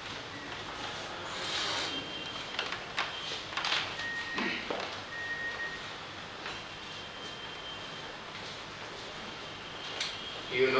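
Room noise during a pause in speech, with scattered small clicks and rustles and a brief faint high tone.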